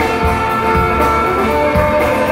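Live folk-rock band playing: bowed fiddle leading over acoustic guitar and a drum kit, with a steady beat.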